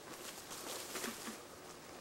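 Leaves and branches rustling and crackling as someone brushes through dense shrubs, in a cluster of quick bursts from about half a second to a second and a half in.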